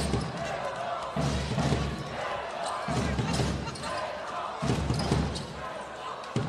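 Basketball game on an indoor court: the ball bouncing on the hardwood and sharp sneaker squeaks and knocks, over a background of voices in a large arena. A low pulse, probably the arena's music, repeats about every second and a half.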